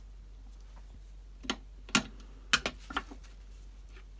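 A few light, sharp plastic clicks and taps, about five between one and three seconds in, from a plastic ink pad and a stencil brush being handled on a craft mat while green ink is loaded onto the brush.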